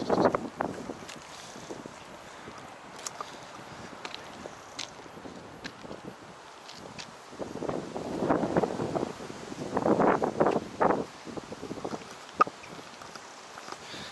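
Wind blowing across the microphone outdoors, a steady low rush that swells into louder gusts about halfway through, with one sharp click near the end.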